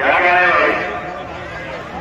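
A man's voice over a loudspeaker in a long, drawn-out call with a wavering pitch, loudest in the first second and then trailing off, typical of a dangal wrestling commentator announcing the bout.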